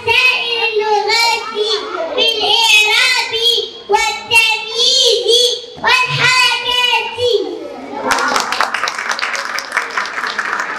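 A young girl speaking emphatically into a microphone, her high voice carried over the hall's PA, followed from about eight seconds in by audience clapping.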